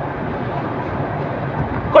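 Steady road and engine noise heard inside a car's cabin.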